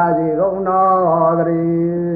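A man's voice chanting Pali in long, drawn-out notes that bend slowly in pitch.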